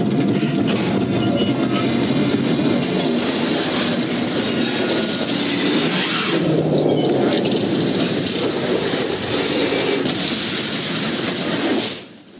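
Action-film sound effects of a vehicle crashing down a shaft and exploding: a loud, continuous crashing and rumbling din with no break, cut off abruptly at the end.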